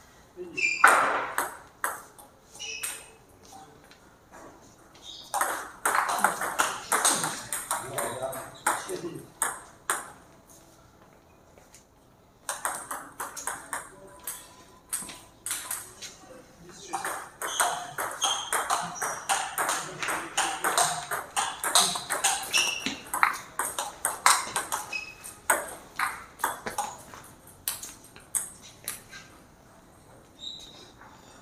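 Table tennis balls clicking off rubber paddles and the table in quick rallies: a short exchange at the start, one rally of about five seconds, then a longer rally of about fourteen seconds, with pauses between points.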